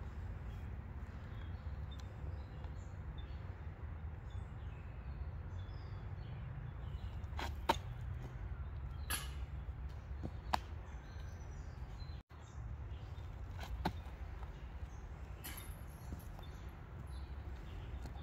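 Outdoor ambience: a steady low rumble with a handful of sharp clicks, the loudest about eight seconds in, and faint bird chirps.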